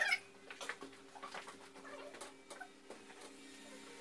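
Glass panes being handled and stood upright on a felt-covered workbench: scattered light knocks and clicks over a steady low hum, opening with a short high squeak.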